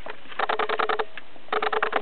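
Cricket chirping: two short trains of rapid pulses, about a dozen a second, each lasting around half a second and about a second apart.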